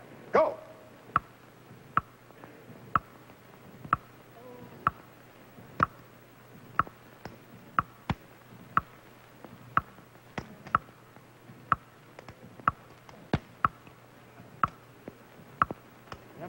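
The game-show stage clock ticking, one sharp ringing tick about every second, as the timed 20-second round runs. A few fainter clicks fall between the ticks, and a short loud sound comes about half a second in.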